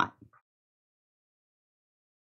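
Near silence: the end of a spoken word fades out within the first half second, then the sound drops to dead silence.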